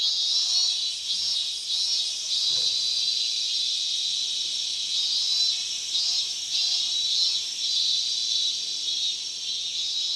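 A dense chorus of chirping insects, like crickets, played as a theatre sound effect; it starts suddenly and holds steady and high-pitched.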